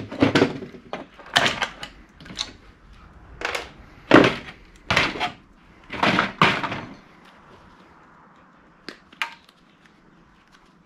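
Knocks and clatter of a VCR's circuit boards and plastic chassis parts being pulled apart and handled, a string of irregular sharp strikes for about seven seconds. Then it goes quieter, with two short clicks near the end.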